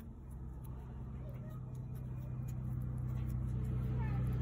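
A motor vehicle's engine running, a steady low hum that grows gradually louder.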